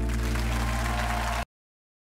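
Studio audience applause breaking out over the band's final sustained chord. Both are cut off abruptly about a second and a half in.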